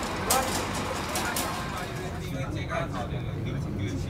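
Tour coach engine idling with a steady low hum, with a few sharp knocks in the first second and a half and voices talking nearby.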